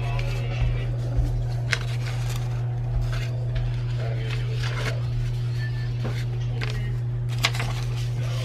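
Sheets of butcher paper and sublimation transfer paper rustling and crinkling as they are handled and smoothed flat, with a few sharp crackles, over a steady low hum.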